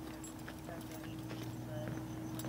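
Hard-soled shoes stepping on concrete, a few irregular clicks, over a steady low hum.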